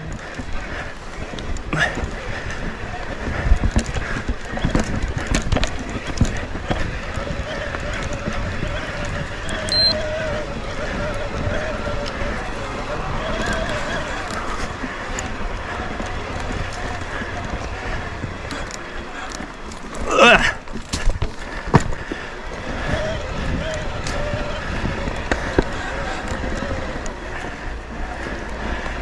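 Electric mountain bike rolling along a dirt singletrack: steady tyre and wind noise with frequent clicks and rattles from the bike over the rough trail. About twenty seconds in there is a short, wavering high-pitched sound.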